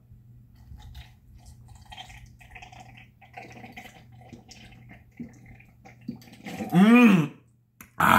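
A man gulping down a glass of mixed drink in long swallows, with soft slurping, liquid sounds and small clicks. Near the end comes a loud, drawn-out vocal exclamation that rises and then falls in pitch as he finishes the glass.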